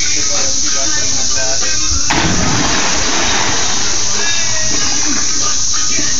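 A person plunging into a swimming pool from roof height: one big splash about two seconds in, with voices and music around it.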